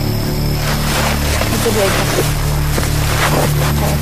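A steady low drone with a person's wordless, wavering vocal sounds over it, strongest about a second and a half to two seconds in.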